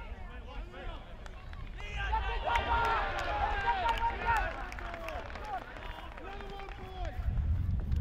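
Several voices from spectators and players shouting and calling out over each other during play, loudest for a couple of seconds from about two seconds in. A low rumble comes in near the end.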